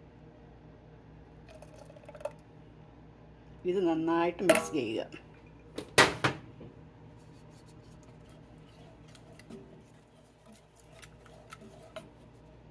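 Kitchen utensils knocking on a metal pan: a sharp clink about six seconds in, then light ticks and scrapes as egg mixture is stirred into caramel mix with a wooden spoon. A brief voice is heard about four seconds in.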